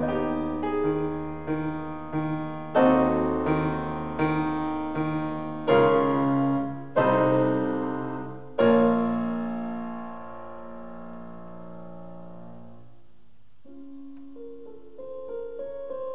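Piano playing a solo interlude of a classical song accompaniment, with no voice. Repeated chords give way to several loud struck chords; the last is held and left to die away for several seconds before quieter notes begin climbing near the end.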